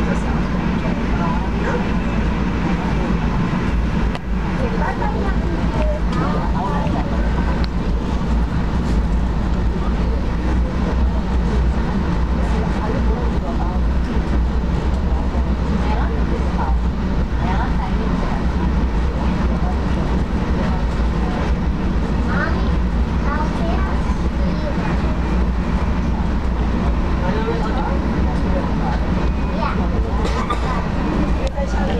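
Moving passenger train heard from inside the carriage: a steady low rumble that runs on without a break, with other passengers' voices faintly underneath.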